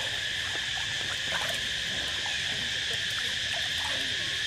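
Steady high-pitched insect chorus droning without a break, with faint water sloshing as a young macaque moves in the pool.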